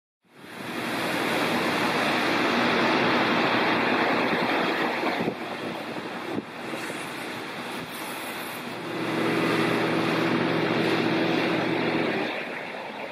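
Self-service petrol pump dispensing fuel: a steady rushing noise of fuel flowing. It eases off about five seconds in, then grows again about nine seconds in with a low hum under it.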